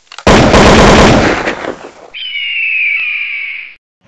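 Sound effects of an animated channel intro: a very loud blast-like burst of noise about a quarter second in that fades over nearly two seconds, then a high whistling tone that slides slightly downward and cuts off shortly before the end.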